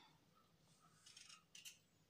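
A kitchen knife scraping and cutting the dry skin off a shallot: two faint, short, crisp scrapes in the second half, over near silence.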